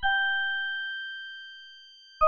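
A single bell-like note from the Krakli Abacus software synthesizer, struck once at the start and fading away slowly. Its lower overtone dies out first, within about a second.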